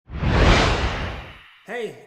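A whoosh sound effect that swells quickly, then fades away over about a second and a half.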